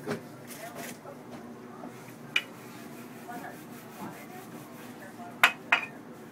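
Kitchen utensils knocking and clinking on a counter and dishes during pizza making: one sharp click about two and a half seconds in, then two more close together near the end, over a faint steady background hum.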